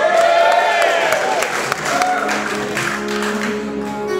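Concert audience cheering and clapping. About two and a half seconds in, two guitars begin holding notes as the song starts.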